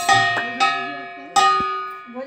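Large brass hand cymbals clashed three times, near the start, about half a second in, and past the middle; each clash rings out and fades slowly.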